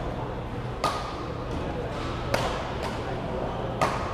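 Badminton rackets striking a shuttlecock in a rally: three sharp hits about a second and a half apart, echoing in a large hall, over a murmur of voices.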